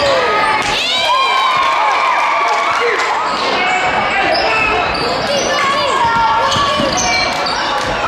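Basketball game in a gym: sneakers squeaking on the court in quick short chirps, the ball bouncing, and spectators talking and calling out.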